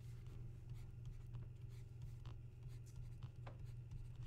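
Faint taps and strokes of a stylus on a tablet screen as arrows are drawn, over a steady low hum.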